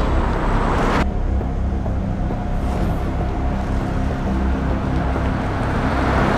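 Car driving on a road: steady engine and tyre noise, with a rushing swell that cuts off abruptly about a second in.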